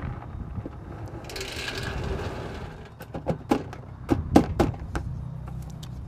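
A brief hiss about a second in, then a run of irregular sharp knocks and clanks over a steady low hum.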